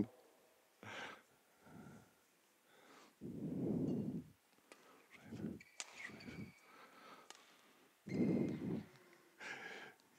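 A man's breathing and soft sighs close to a headset microphone, in about seven short, quiet breaths with silence between them; the longest come around three and a half seconds in and again around eight seconds in.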